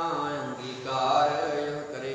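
A man's voice chanting Sikh scripture (Gurbani) in a slow, melodic recitation, holding long notes that glide in pitch.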